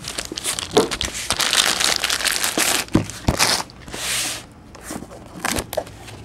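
Plastic wrapping crinkling and tearing as it is pulled off a trading-card box, with a few sharp knocks along the way.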